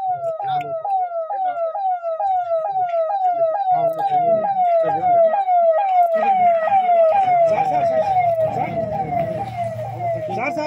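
Convoy escort siren, a rapid repeating wail that falls in pitch and jumps back up about three times a second. Vehicle engines rumble underneath, louder in the second half as the cars drive past.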